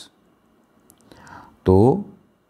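A pause in a man's speech: a few faint stylus taps on a tablet screen and a soft breath, then he says a short word near the end.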